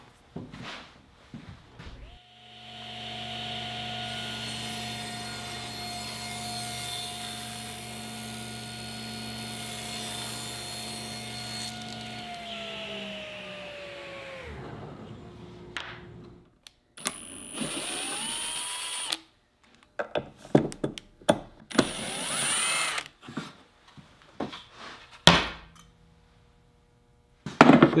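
A table saw motor starts and runs steadily through a rip cut in plywood, then winds down with falling pitch. Afterwards a cordless drill-driver spins twice in short bursts, backing out the screws of a miter saw fence, among scattered wooden knocks and clunks.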